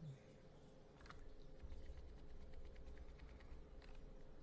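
Near silence: faint room tone with a low steady hum and a couple of faint clicks.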